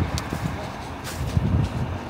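Wind buffeting the phone's microphone in uneven low rumbling gusts, with a few faint clicks of handling noise.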